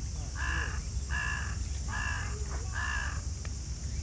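A crow cawing four times in an even series, each caw short and a little under a second apart.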